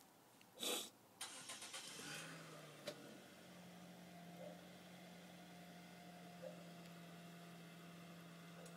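Mostly quiet: a short rustle just under a second in and a few faint handling noises and a click over the next two seconds, then a faint steady low hum.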